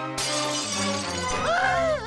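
Cartoon sound effect of a piggy bank being smashed: a sudden shattering crash just after the start, over background music. Near the end comes a short cry that rises and falls in pitch.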